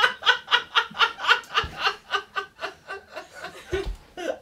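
A man laughing hard in quick, repeated bursts, about four a second, trailing off near the end.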